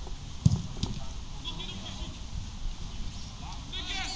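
Distant shouts and calls of players across a football pitch, over an open-air background. There are two dull thumps about half a second in.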